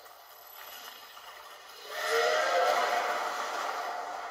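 Sound effect from the animation playing through a laptop's speaker: a noisy whoosh swells up about two seconds in and slowly fades.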